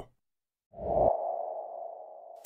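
Logo-intro sound effect: a deep, short hit about three-quarters of a second in, with a mid-pitched tone, like a sonar ping, that swells and then lingers, slowly fading.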